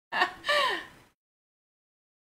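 A woman's voice: two short, wordless vocal sounds in the first second, the second sliding down in pitch, like a quick laugh. The sound then cuts out to dead silence, a dropout in the livestream's audio.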